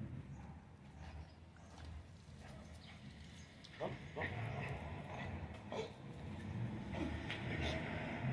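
Several small dogs meeting on leashes, giving a few brief yips, over a steady low rumble.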